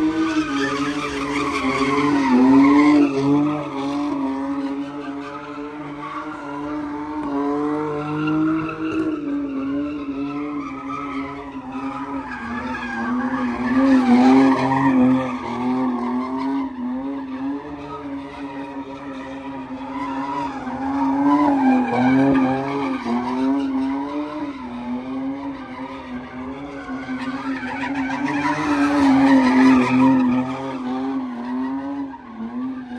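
A car doing donuts: its engine is held at high revs with the pitch wavering slightly, and its tyres squeal and skid on the pavement. It swells louder a couple of seconds in, around the middle and again near the end.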